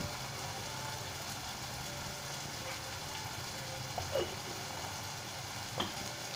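Spinach, fenugreek and tomato masala sizzling softly and steadily in a kadhai on a gas burner, with a faint short sound about four seconds in.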